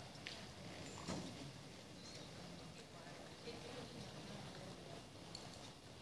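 Faint, distant hoofbeats of a horse jogging on soft arena footing.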